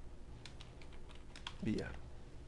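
Typing on a computer keyboard: a quick run of separate key clicks as a short string is entered. A brief murmur of a man's voice comes near the end.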